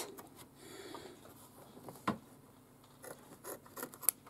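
Scissors trimming excess appliqué fabric close to a stitched line in an embroidery hoop: faint rubbing of cloth and a few quiet snips, the sharpest one about two seconds in.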